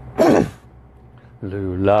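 A man clears his throat once, short and loud, near the start. About a second and a half in, he resumes chanting on a long held sung syllable ('la') of a mantra.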